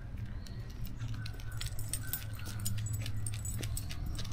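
Small metal pieces jingling lightly in short, irregular ticks as people walk, over a low steady hum.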